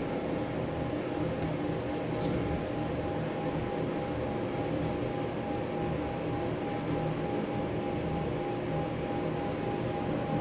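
Steady low hum and hiss with a faint continuous high tone, broken only by a couple of faint clicks.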